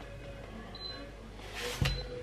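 Handling noise: a short rustling rush that ends in a single dull knock near the end, over a faint steady background.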